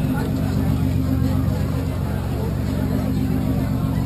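A steady low mechanical hum, like an engine or generator running, under indistinct chatter of voices.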